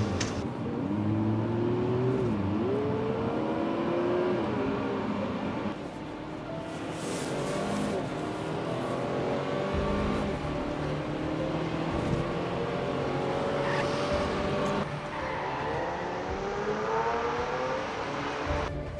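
Car engine accelerating, its pitch climbing and dropping back with gear changes, then climbing again near the end, with a car rushing past about seven seconds in.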